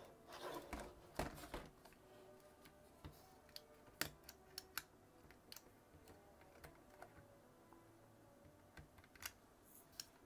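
Near silence broken by faint scattered clicks and taps of hard plastic being handled, a little rustle in the first second and a half, then single clicks every half second to a second, the sharpest about four seconds in.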